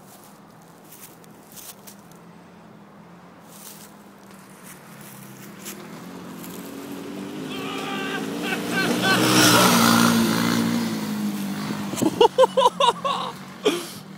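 Off-road buggy engine running as the buggy drives by, growing louder to a peak about ten seconds in and then fading away. Near the end a person's voice calls out a few short times.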